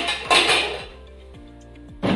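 Dishes clinking and clattering as they are set into a plastic dish rack: a sharp clink right at the start and a short clatter just after, over background music.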